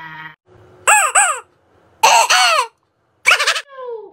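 A rubber duck squeeze toy squeaking four times: two quick squeaks about a second in, a longer one halfway through, and a last one that slides down in pitch. A drawn-out voice wail cuts off just after the start.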